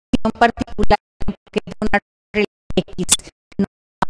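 A woman's voice through a microphone, cut into short fragments by repeated dropouts to dead silence several times a second, so the words come through choppy and garbled: a broken-up audio signal.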